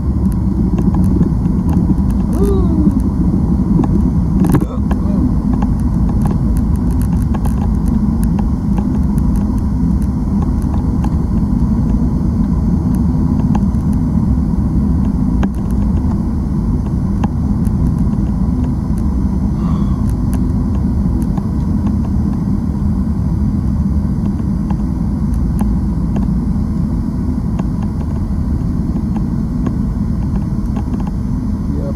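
Steady road and engine noise inside a car cabin cruising at highway speed.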